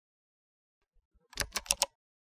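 Near silence, then a quick run of four or five computer keyboard keystrokes starting about one and a half seconds in.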